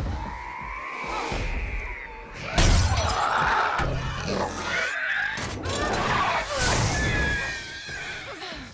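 Film action soundtrack: a dramatic music score under glass shattering and cracking, with a sudden heavy crash about two and a half seconds in and another loud burst near the end, as creatures break against the boat cabin's windows.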